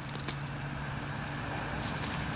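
Steady low background noise outdoors with a faint low hum running under it.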